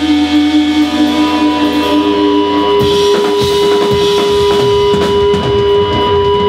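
A rock band playing live through amplifiers: electric guitars hold long sustained notes over bass guitar, and the drum kit comes in with hits about halfway through.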